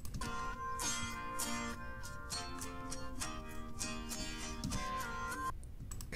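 Playback of the 'other' stem, everything but drums and bass, split from a finished song by Logic Pro 11's Stem Splitter: plucked guitar notes with a couple of held high notes that bend, played fairly quietly.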